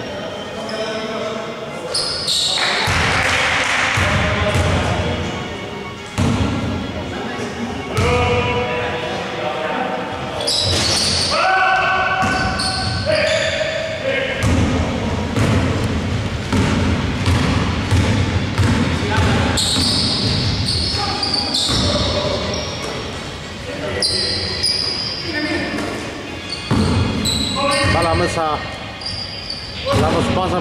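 Basketball bouncing on a hardwood gym floor, with players' feet on the court and voices calling out, echoing in a large sports hall. Short knocks come throughout, with brief high squeaks in the later part.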